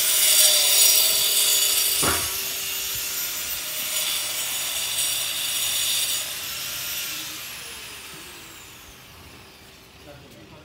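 An electric power tool running loud and high-pitched, then switched off about six seconds in, its motor whine falling in pitch as it spins down.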